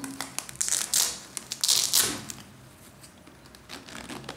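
Hands rustling and scraping inside a suede high-top sneaker as the insole is worked out. The sound comes in several rasping bursts over the first two seconds or so, then softer handling.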